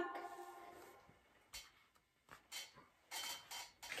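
Faint handling of a picture book's paper pages as a page is turned: a few soft, brief rustles and taps in near quiet.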